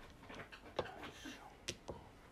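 Mahjong tiles clicking against each other: a few sharp clacks, with two close together near the end.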